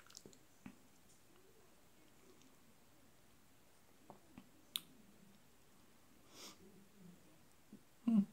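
Near silence with faint mouth clicks and lip smacks from a person tasting hot sauce off a wooden spoon. There is a sharper click a little before five seconds in and a breath about six and a half seconds in.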